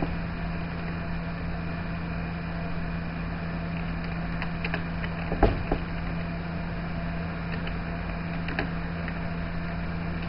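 Steady low electrical hum over background hiss, broken by a few short, scattered clicks of computer keys being typed, most of them in the middle of the stretch.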